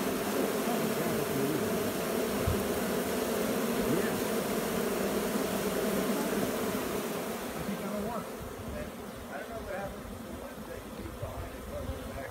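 Honeybees of a freshly hived swarm buzzing en masse at the hive entrance, a dense steady hum that grows quieter about two-thirds of the way through.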